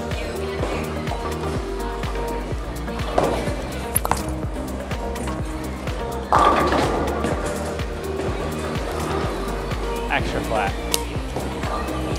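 A bowling ball thrown down the lane: it lands with a sudden thud about six seconds in and rolls on, under background music.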